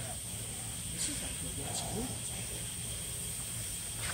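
Steady machine-room ambience of industrial fans running in a large factory hall: a constant low hum under a steady high-pitched hiss.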